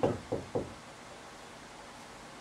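Three soft knocks of a marker tip against a whiteboard in the first half-second of writing, followed by quiet room tone.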